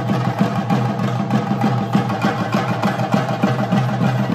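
Chenda drums beaten with sticks in a fast, dense, continuous rhythm, the traditional percussion for a Theyyam dance.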